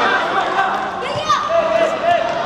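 Voices calling out and chattering in a sports hall, with one call sliding down in pitch about a second in.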